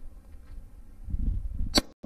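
A single rifle shot from an AR-style rifle near the end, a sharp crack with a brief ring after it, over a low rumble of wind on the microphone.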